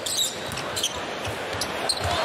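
Steady arena crowd noise with a basketball being dribbled on the hardwood court, a few faint sharp bounces.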